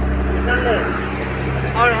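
A passenger boat's engine running with a steady low drone, with people's voices over it.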